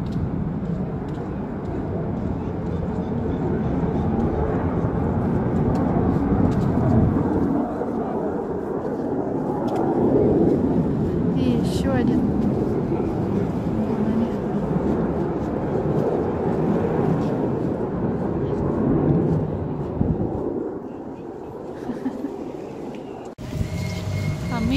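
Military fighter jet taking off and climbing away: a loud continuous jet roar that swells and fades, dying down about twenty seconds in.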